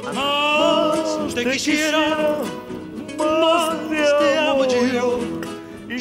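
A voice singing a tune in two long phrases of held, wavering notes, with a short break about halfway.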